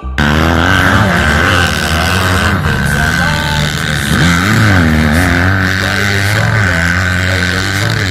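Motocross dirt bike engines running on a dirt track, revving up and easing off in pitch as riders go round, with one engine rising and falling clearly about halfway through.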